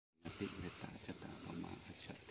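Low, indistinct voices.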